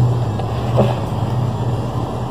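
A steady low hum with a noisy rumble under it, running without change. A faint short rub or scrape about a second in, from a takeout food box being handled.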